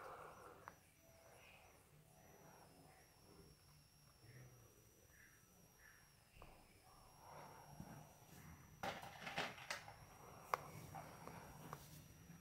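Near silence: faint room tone with a few soft clicks and rustles in the second half.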